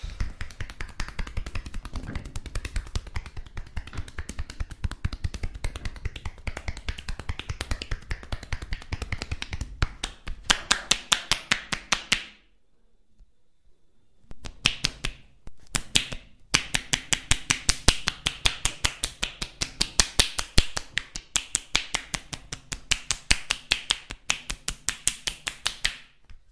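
Rapid percussive tapotement on a bare back: the masseur's joined palms strike the skin at about five sharp claps a second, and the loose fingers click together on each blow. The strikes stop for about two seconds about halfway through, pause briefly again, then carry on at the same fast rate.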